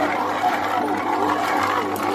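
Electric stand mixer running on its lowest speed, kneading dough with a dough hook. It makes a steady motor hum with a whine that rises and falls in pitch.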